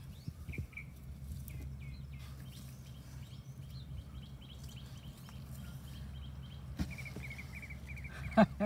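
Small birds chirping: repeated short call notes, turning into a quick trill of notes near the end. A steady low hum runs underneath.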